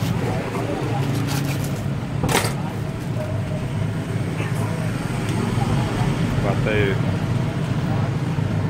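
Street traffic with engines running steadily, under nearby voices, and a sharp click or knock about two seconds in.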